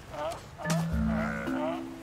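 Sea lions calling: short, wavering, rising-and-falling calls, two near the start and more layered on through the middle. About two-thirds of a second in, background music enters with steady low notes that step up in pitch.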